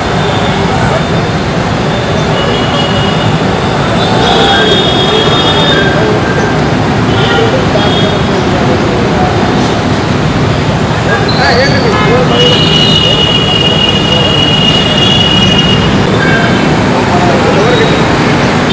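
Steady road traffic noise with vehicle horns sounding several times, the longest held toot about two-thirds of the way through, and voices of people talking in the background.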